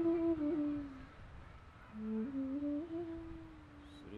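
A person humming a soft, wordless tune that steps up and down in pitch, in two short phrases with a pause of about a second between them.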